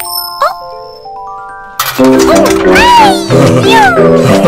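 Cartoon coin-operated kiddie ride starting up: a coin drops in with a click and a high chime, a climbing run of electronic beeping notes follows, then about two seconds in bouncy ride music starts with rising-and-falling springy tones.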